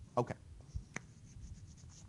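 Light tapping and scratching of a stylus on a tablet screen, with one sharp click about a second in.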